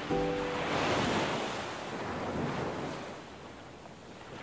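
Ocean surf washing ashore, swelling loudest about a second in with a smaller wash later, then fading away. A short held note of background music ends just after the start.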